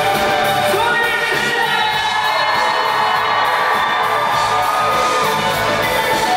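Live rock band playing an instrumental passage, with electric guitar over drums.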